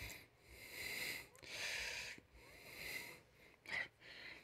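A person breathing close to a headset microphone: three soft breaths about a second apart, then a short sharp sniff near the end.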